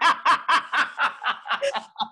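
Women laughing: a quick run of short pulses of laughter, about six a second, fading toward the end.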